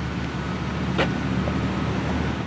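A vehicle engine running steadily at idle, a low even hum, with a single sharp click about a second in.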